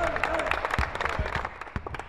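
Sounds of a basketball practice on a hardwood court: a rapid patter of sharp knocks and claps, from balls bouncing and hands clapping, mixed with players calling out. It thins out toward the end.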